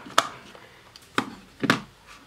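The battery and plastic back cover of a Nokia 3310 are handled back into place, with three sharp plastic clicks as the parts snap home.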